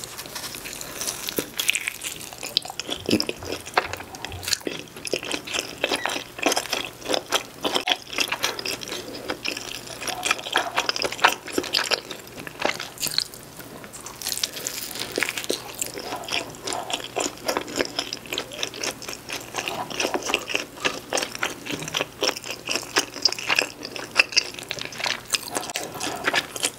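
Close-miked eating of a pepperoni cheese pizza: bites into the slice and continuous chewing, full of small clicks and crackles.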